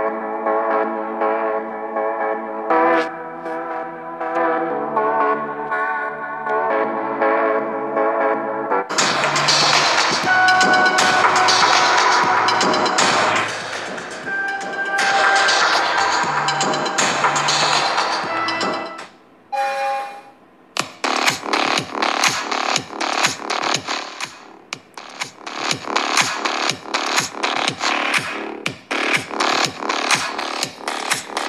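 Music played through a smartphone's built-in loudspeaker, recorded close up: a synth melody, then a fuller section, then a short drop at a track change about two-thirds of the way in and a new electronic dance track with a steady beat. The speaker sounds clear and undistorted even at full volume, though not very loud.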